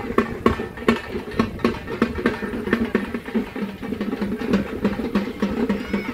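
Music led by drums, struck in a fast beat of about three to four strokes a second.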